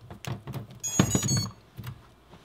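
A LiPo battery is plugged into a miniquad with a few knocks and clicks, then the BLHeli_S ESCs play their short power-up beeps through the brushless motors, a quick run of high tones about a second in.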